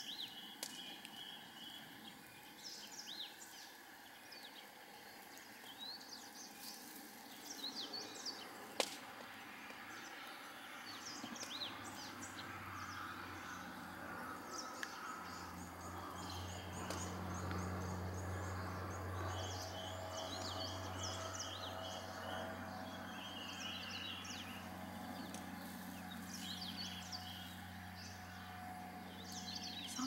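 Outdoor ambience of small birds chirping and trilling on and off throughout. A single sharp click about nine seconds in, and a low steady hum that comes in a little before halfway and grows stronger.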